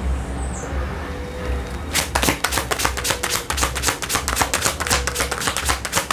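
A deck of tarot cards being shuffled by hand: a fast, dense run of crisp card clicks that starts about two seconds in and keeps going, over a low steady hum.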